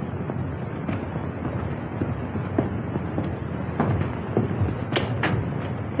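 A series of scattered knocks and clicks over a steady hiss, with the sharpest pair of knocks about five seconds in.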